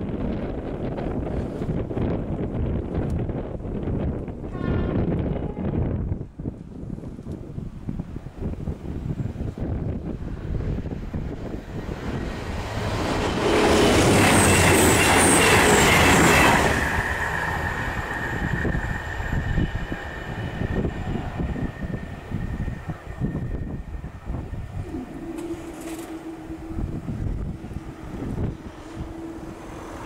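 CrossCountry Voyager diesel train passing over the crossing at speed, a loud rush lasting about three seconds, with wind on the microphone before and after. A thin steady ringing tone lingers for several seconds after it passes, and a lower steady hum sounds near the end as the barriers rise.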